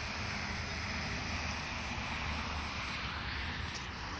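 Steady rumble and hiss of a moving vehicle, heard from inside it.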